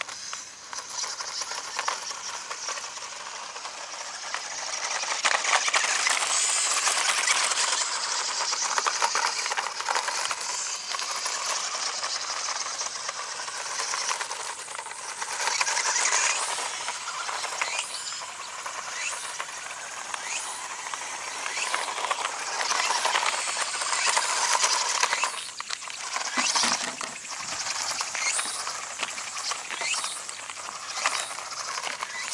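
Toy-grade RC off-road buggy driving over gravel: its small electric motor whines, the pitch rising and falling with the throttle, while the tyres crunch and kick up loose stones in a steady clatter of small clicks. It gets louder about five seconds in and eases off briefly near the end.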